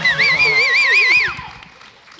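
A person's high falsetto "woo" held for about a second with a fast, wavering vibrato, then dying away.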